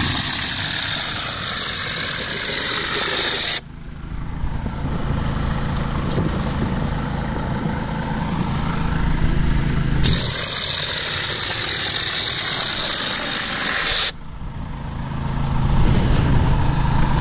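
Compressed air hissing through a four-jet hopper stucco gun as it sprays render onto a wall, in two bursts of about four seconds each. The first starts at once, the second about ten seconds in, and each cuts off suddenly. Under and between them runs the steady hum of the generator and air compressor.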